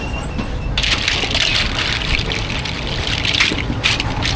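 Water streaming and splashing off mussels as a wire strainer lifts them out of a steel pot of cooking liquid, starting about a second in, with a few sharp clicks near the end.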